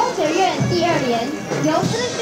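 Music with a beat about twice a second, under many overlapping voices of a crowd talking and calling out.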